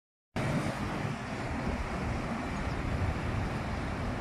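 Steady roadside traffic noise, a low even rumble of vehicles on a busy road, starting after a moment of silence at the very beginning.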